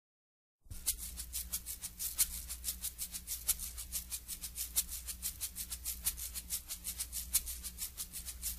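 Shaker percussion playing a fast, even rhythm over a low steady hum, starting about half a second in: the instrumental opening of a samba song.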